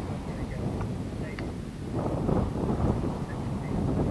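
Wind buffeting the microphone: a rough, gusting low rumble that grows louder about two seconds in.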